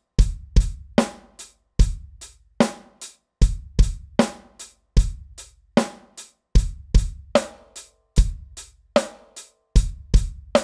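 Electronic drum kit played in a simple, steady 4/4 groove: eighth-note hi-hat strokes at about two and a half a second, with bass drum and a snare backbeat.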